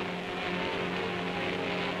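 Grumman Avenger torpedo bomber's piston radial engine in flight, a steady propeller drone.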